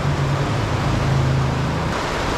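River water rushing over rapids below a low dam, a steady, loud noise, with a steady low hum underneath.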